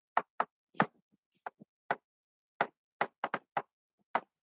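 Chalk tapping against a blackboard while words are written: about a dozen short, sharp taps at an uneven pace.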